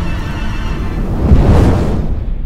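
A sound-designed monster cry from a fiery lava creature swells over a low rumble, loudest about a second and a half in, then dies away into the rumble.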